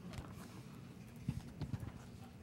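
Handling noise on a handheld microphone as it is passed between two people: a few soft, irregular knocks and bumps, the loudest about a second and a half in.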